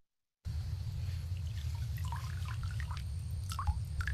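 After a brief silence, light water drips and small splashes as a wire mesh minnow trap is handled in shallow pond water, over a low steady rumble.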